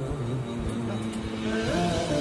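Background vocal music: long held, humming notes that move to a new pitch with a rising glide near the end, with no beat.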